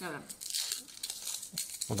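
Foil wrapper of a Kinder Surprise chocolate egg crinkling as it is peeled off by hand, a quick run of small crackles.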